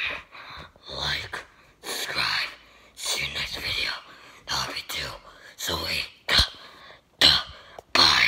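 A person's voice in short bursts about a second apart, with no clear words, and a sharper burst near the end.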